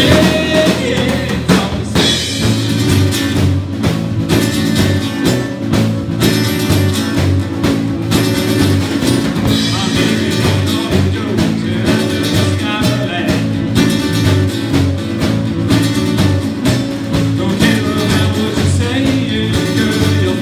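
Small band playing live: two acoustic guitars strummed over bass and a drum kit keeping a steady rock beat.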